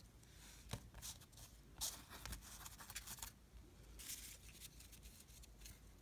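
Faint rustling and sliding of trading cards being handled and flipped through by hand, a string of soft swishes.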